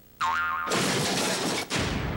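Comedy sound effect for a sudden magical appearance. A short pitched tone that wobbles in pitch leads into a loud rushing whoosh, like a puff of smoke. The whoosh breaks off briefly near the end, then returns and trails away.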